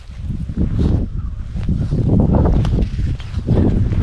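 Close, irregular rustling and rubbing of a fleece sleeve and glove as fishing line is pulled in hand over hand through an ice hole, over a low rumble of wind or handling noise on the microphone.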